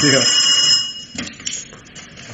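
Telephone bell ringing in one steady ring that stops about a second in, followed by a click as the receiver is picked up.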